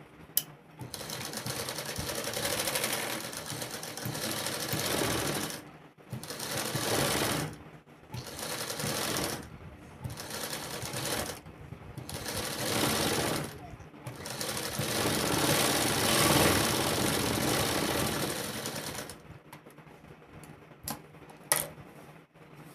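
Sewing machine stitching fabric in a series of short runs, stopping briefly between them as the cloth is turned around the neckline corners, with one longer run in the second half. The machine stops near the end, and a few sharp clicks come at the start and the end.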